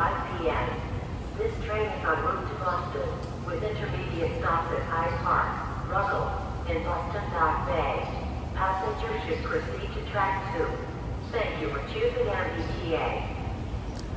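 Other people's voices talking in the background, quieter than a close voice, over a steady low hum.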